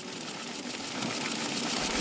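Banknote-counting machine running, riffling a stack of paper notes: a dense, steady mechanical whirr that starts abruptly and grows slightly louder.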